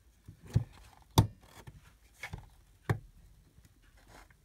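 Large square craft punch being pressed down on thick card, giving four sharp clacks, the loudest about a second in; the card is thick and hard to get the punch through.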